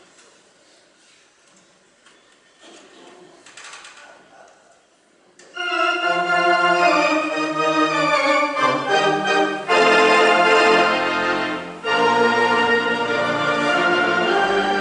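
Theatre organ entering after about five seconds of quiet hall sound, playing loud sustained full chords that change every second or so, with a brief drop in level about twelve seconds in. It opens a medley of sea songs.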